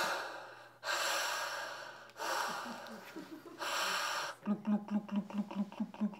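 A person making scuba-breathing sound effects with the mouth: three long hissing breaths, then a fast run of short low bubbling pulses, about six a second, in the last second and a half.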